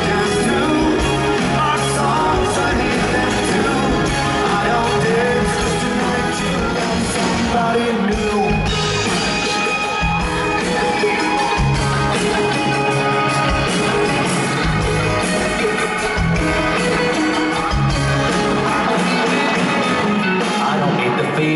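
Live pop-rock band playing together with an orchestra, with singing heard over the music.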